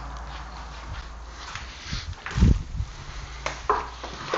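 Handling noise of a router and vacuum hose on a workbench: a few light knocks and one dull thump about halfway through, over a steady low hum.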